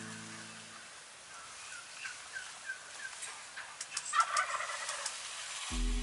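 Wild turkeys: a run of about six short, falling yelps, then a tom gobbling about four seconds in, the loudest sound.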